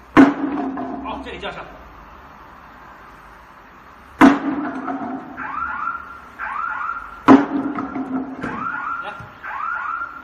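Sledgehammer striking a bamboo block-machine pallet lying on a concrete floor in a hammer test of its strength: three sharp blows, each with a short ringing after it. From about five seconds in, an electronic alarm-like chirp repeats in pairs about once a second.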